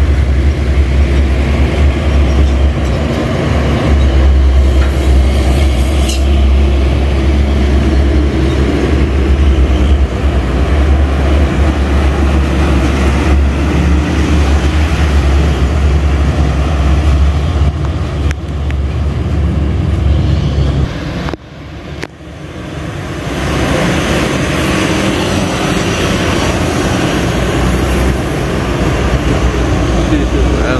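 Heavy diesel trucks passing close by in road traffic: a steady, loud low engine rumble with tyre noise. The sound briefly drops away about two-thirds of the way through, then returns as a hissier traffic sound.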